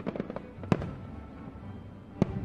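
Aerial fireworks shells bursting: a quick run of sharp cracks at the start, then one loud bang a little under a second in. Music plays steadily underneath.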